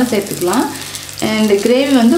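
Seeds and spices sizzling in a pan on the stove with a steady hiss and fine crackle, under a person's voice talking, which pauses briefly about halfway through.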